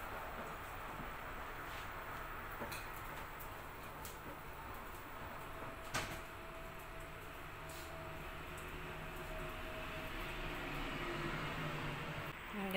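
Steady kitchen background hum with a few faint clicks and one sharper knock about halfway through, like a door or cupboard being handled.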